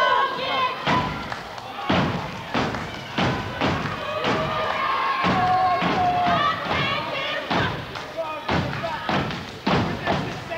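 A step team stomping and clapping in a driving rhythm, sharp thuds coming roughly twice a second, with voices calling out between the beats.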